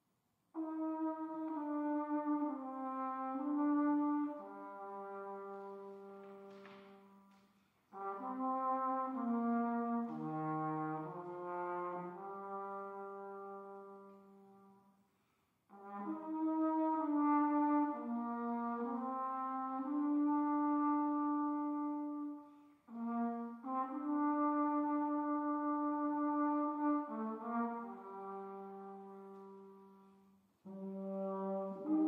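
A 19th-century brass septet on period Sax-family instruments (saxotromba, flugelhorn, saxhorns) playing in C minor. Several instruments sound together in chords with held notes, in four phrases that break off at about 8 s, about 15 s and briefly near 23 s.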